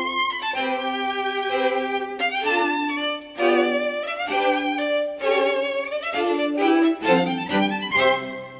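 Background music: a violin playing a melody, its notes changing often and wavering with vibrato.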